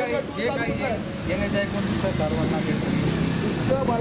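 Several men talking over one another, with the low, steady running of idling truck engines underneath.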